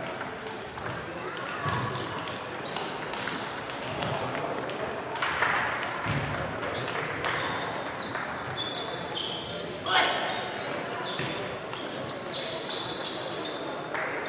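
Table tennis balls clicking off bats and tables at many tables at once, an irregular patter of light ticks in a large hall. Under it runs a hubbub of voices, and there is one louder knock about ten seconds in.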